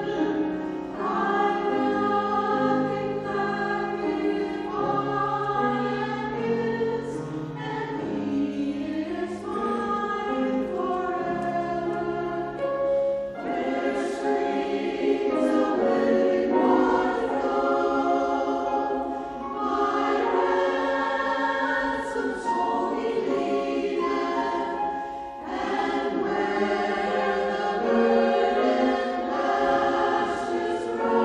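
Mixed choir of men and women singing in parts. The low voices drop out about 13 seconds in, leaving the higher voices to carry on.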